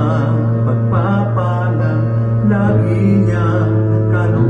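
A man singing a Tagalog worship song into a handheld microphone, phrase by phrase, over a steady instrumental backing.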